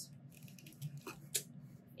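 Faint plastic clicks and rustling from fingers picking at the lid of a small plastic cream jar that won't open, with two sharper clicks a little past the middle.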